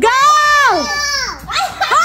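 Excited, high-pitched shouting from the onlookers: one long yell, then a shorter one near the end.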